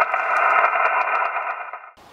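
Amateur HF transceiver's speaker hissing with band noise and static while the operator listens for replies after calling for contacts, with faint steady tones in the hiss; the hiss cuts off suddenly near the end.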